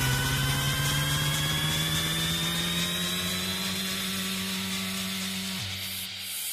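Electronic house-music build-up: a slowly rising synth riser with a fast buzzing, drill-like texture over a held low bass note. The bass cuts out near the end.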